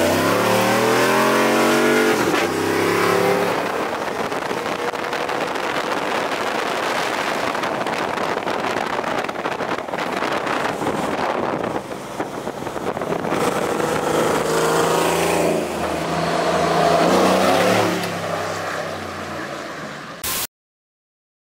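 Chevy prerunner pickup truck's engine accelerating, its pitch rising over the first couple of seconds, then a steady stretch of driving noise with tyre and wind hiss, and the engine pulling harder again for a few seconds near the end.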